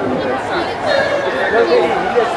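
Several people's voices chattering and calling out close by, without a loud starting-gun crack standing out.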